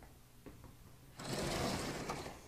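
A sliding blackboard panel rolling up in its frame, a rough rumbling rattle lasting just under a second that starts about a second in.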